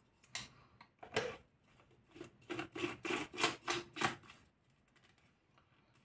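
A black plastic cap being twisted onto a tall plastic blender bottle: two single clicks, then a quick run of about eight clicks from the threads over a couple of seconds.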